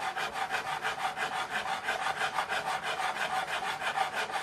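A fret file rasping back and forth over a guitar's metal fret wire in quick, even strokes, rounding off the flat land left on the fret by leveling. This is a fret recrown. A faint steady tone runs under the strokes.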